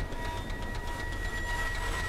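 Steady rain from a film soundtrack, with a low rumble beneath it and a thin, steady high tone held over it.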